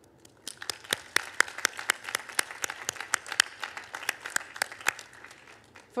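One person clapping hands at a podium microphone: sharp, regular claps about four a second, starting about half a second in and stopping about a second before the end.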